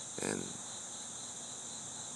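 A steady, high-pitched chorus of crickets singing without a break.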